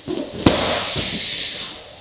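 Two people falling back onto a foam gym mat in a takedown: a sharp thump about half a second in, then about a second of rustling and scuffing as bodies and clothing shift on the mat.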